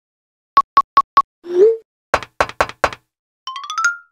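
Short animated-logo sound-effect jingle: four quick pitched ticks, a brief upward-sliding boing, four knocks, then a fast rising run of notes.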